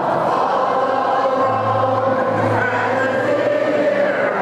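A crowd singing together with a concert band accompanying, many voices holding notes over long low band notes. A low bass note comes in about a second and a half in and is held.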